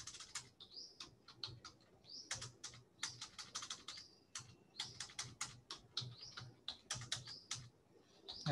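Computer keyboard typing: faint runs of quick, uneven keystrokes broken by a few short pauses.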